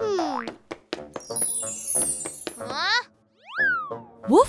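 Cartoon sound effects over music: a falling swoop at the start, then a long descending run of bright chime-like notes, and near the end a quick springy up-and-down glide like a boing.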